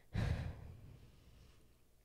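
A short breathy exhale or sigh close to a microphone, just after the start, fading within about half a second.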